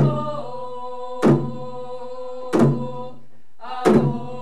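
Coast Salish hand drums struck in a slow, steady beat, about one strike every 1.3 seconds (four strikes), under a traditional sung chant holding long notes.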